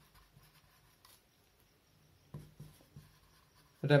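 Marker pen writing on a whiteboard: faint scratching strokes of the felt tip against the board, coming in a few quick spurts about two and a half to three seconds in.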